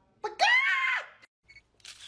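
A single loud, high-pitched screech about a second long, rising then falling in pitch, followed near the end by a short hiss.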